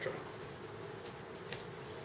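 Quiet, steady low hum of room background noise, with one faint click about one and a half seconds in.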